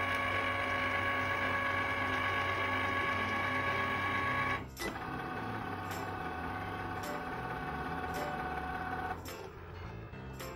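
Cricut cutting machine's motors whining steadily as the rollers feed a bare cutting mat in and out and the carriage draws guide lines on it with a water-based marker. About halfway through the whine drops to a lower pitch after a click, with a few light clicks following, and it stops shortly before the end.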